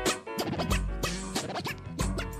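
Hip hop beat of drums and bass with turntable scratching over it.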